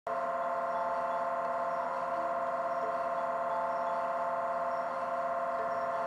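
A steady electronic drone: several sustained tones held together as one unchanging chord, which starts abruptly and breaks off suddenly at the end.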